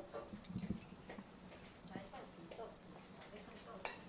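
Faint, indistinct voices with light clicks of spoons and chopsticks against small eating bowls, one sharper click near the end, over a steady low hum.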